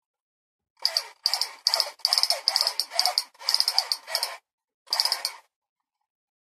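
Toy gun's trigger-pulled firing sound, a run of about seven short rattling bursts in quick succession lasting about four and a half seconds.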